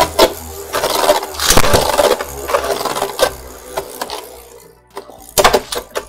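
Two Beyblade Burst spinning tops whirring and scraping across a plastic stadium floor, clashing with sharp clacks again and again. The hardest hits come near the start, about a second and a half in, around three seconds, and just before the end.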